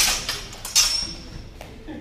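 Swords clashing blade on blade in a fencing bout: a strike at the start, then a harder clash about three-quarters of a second in that rings on high for most of a second.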